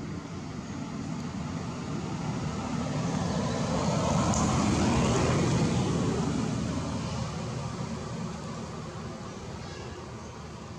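A motor vehicle passing by: a rushing engine-and-road sound that swells to a peak about five seconds in and then fades away.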